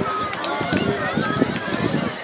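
Crowd chatter: several people talking at once nearby, with no single voice standing out, and a few short knocks among the voices.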